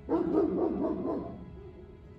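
A dog giving a quick string of short, wavering calls for just over a second, over steady background music.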